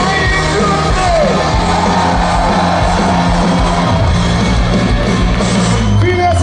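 Live ska-punk band playing loud amplified rock with vocals, recorded from within the audience, with fans yelling and singing along.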